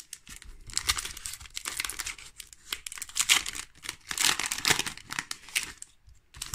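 Foil wrapper of a Pokémon trading card booster pack crinkling and tearing as it is ripped open by hand, in a run of irregular rustling bursts lasting several seconds.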